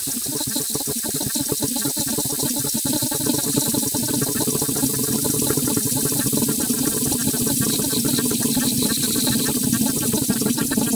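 Electroacoustic music: a dense, continuous texture of rapid fine crackles and clicks over a steady high hiss, with a low droning band that grows stronger from about a third of the way in.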